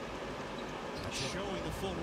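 TV basketball broadcast: a steady arena crowd murmur under the play-by-play commentator's voice, which grows clearer near the end.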